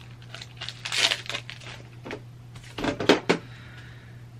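Foil Pokémon booster packs crinkling as they are handled, then a short clatter of sharp knocks about three seconds in as the camera is knocked out of position, over a steady low hum.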